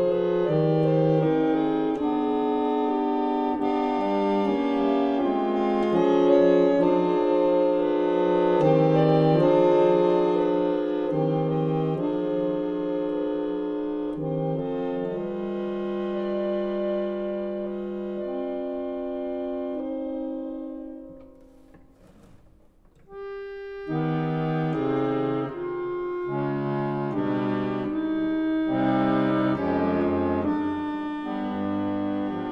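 Single-rank 1852 Debain harmonium, a pedal-blown reed organ, playing held chords. About two-thirds of the way through, the sound fades almost to nothing in a brief pause, then the chords start again.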